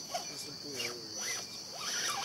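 Quiet voices talking briefly, over a steady high-pitched drone.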